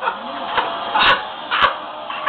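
A television playing in a room: the studio's noisy crowd reaction comes through the TV's speakers, with two sharp clicks near the recording device about one and one and a half seconds in.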